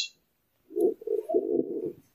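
A man's wordless vocal sound, low and held at a steady pitch for just over a second, starting after a short pause.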